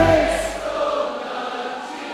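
Worship music with a sustained keyboard chord fades out in the first half second. A congregation's many voices carry on singing and praising together.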